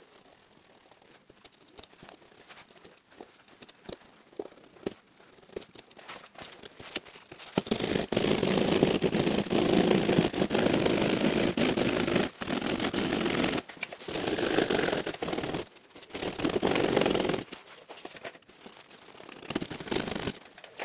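Drywall saw cutting through double-layer plasterboard: a few faint scratches as the blade works in at the corner, then loud rasping sawing from about eight seconds in, with a few short breaks, stopping a couple of seconds before the end.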